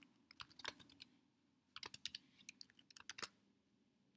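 Faint typing on a computer keyboard: two short runs of keystrokes with a brief pause between them.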